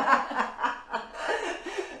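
Three women laughing together, loudest at the start and dying down.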